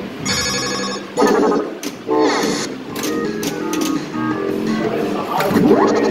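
Williams FunHouse pinball machine playing its electronic music and sound effects, a run of bright chiming tones and bleeps with a pitch glide near the end.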